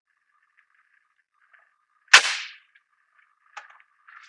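A single sharp clack or snap about two seconds in, dying away quickly, followed by a few faint clicks near the end.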